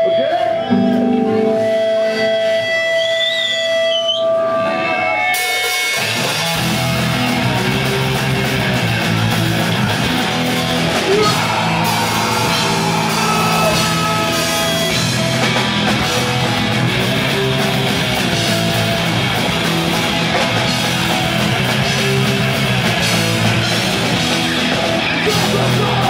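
Hardcore punk band playing live through a club PA. The first few seconds hold only sustained electric guitar notes. About five seconds in, the full band comes in with distorted guitars, bass and drums and keeps playing.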